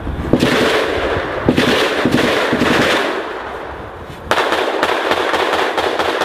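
Sustained automatic gunfire: rapid shots running together in long bursts. It eases off past the middle and comes back sharply about four seconds in.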